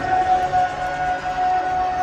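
One long, steady, siren-like tone over the arena's public-address sound system, holding a single pitch with a fainter higher overtone.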